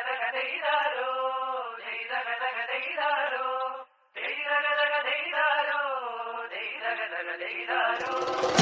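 A wordless sung passage from a Malayalam Onam song: voices holding long, gently bending notes with no drums or bass beneath. It breaks off briefly about halfway through, then resumes.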